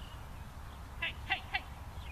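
Three short, sharp animal calls in quick succession about a second in, over faint birdsong and a low rumble of wind on the microphone.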